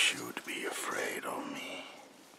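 A woman whispering, with a sharp hiss at the very start.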